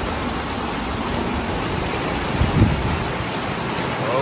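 Heavy rain falling steadily, an even hiss, with a brief low thump about two and a half seconds in.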